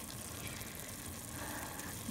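Diced onions, bell peppers and celery sautéing in melted butter in a pot: a soft, steady sizzle.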